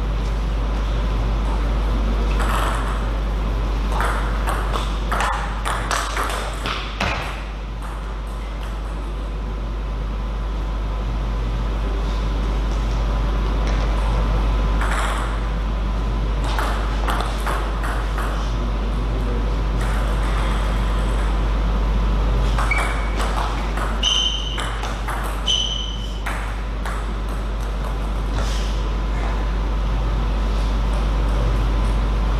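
A table tennis ball clicking off bats and table in short rallies, in several groups of quick sharp hits, over a steady low hum. A few short high squeaks come near the end.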